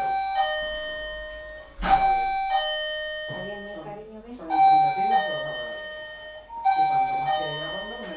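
Bell-like chime tones struck about every two seconds, each strike ringing on at several fixed pitches and fading, over a lower wavering voice-like sound.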